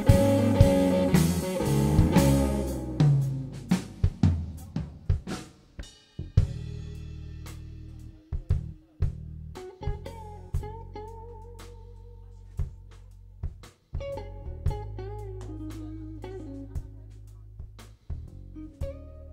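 Live electric blues-rock trio playing an instrumental passage with no singing. A loud full-band sound in the first three seconds falls away to a soft section in which a Stratocaster-style electric guitar plays slow melodic lines with slides and bends, the bass holds low notes, and the drums give only sparse single hits.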